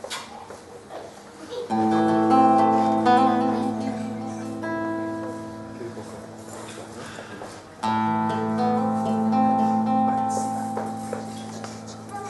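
Skeleton-frame silent guitar playing the opening of a fado: a strummed chord about two seconds in, left ringing under picked notes as it fades, then a second strong chord near eight seconds that fades out the same way.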